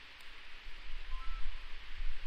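Background noise: a steady hiss with an uneven low rumble beneath it, and no speech.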